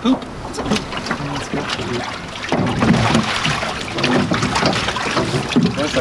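Water splashing and sloshing as a musky is handled in the boat's holding tank, with scattered sharp knocks; a steadier rush of noise comes in about halfway through.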